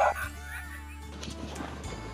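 Sled dogs' excited barking and yipping stops abruptly just after the start, leaving background music with a few faint yips.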